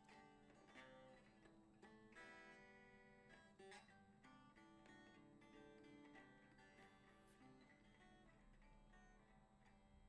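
Faint guitar music: soft plucked notes ringing on, with a fuller strummed chord about two seconds in.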